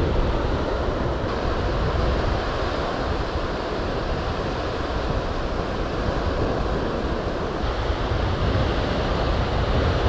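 Steady ocean surf washing on the beach, with wind rumbling on the microphone.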